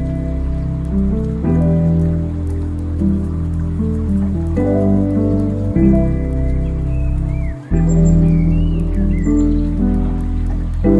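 Chill instrumental lo-fi track: sustained chords over a deep bass, changing every second or two, with faint crackling clicks on top. It briefly drops out about seven and a half seconds in, then a few short gliding high notes come in.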